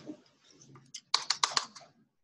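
Typing on a computer keyboard: a few faint keystrokes, then a quick run of about six sharp keystrokes a little past the middle.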